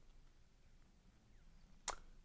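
Near silence: room tone, broken near the end by one short sharp click, a mouth click as lips part just before speech resumes.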